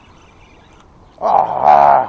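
A man's loud excited shout in two quick bursts, starting a little over a second in, while he fights a hooked fish.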